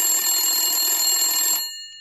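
A bell ringing continuously in the manner of an old telephone bell, then stopping about one and a half seconds in, with its high tones ringing on briefly as it dies away.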